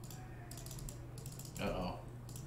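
Quick runs of clicks from typing on a computer keyboard, with a brief louder burst of noise near the end.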